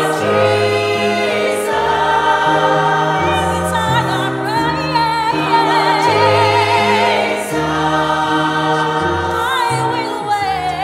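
A woman singing a slow sacred solo with wide vibrato over sustained accompaniment chords that change every second or two.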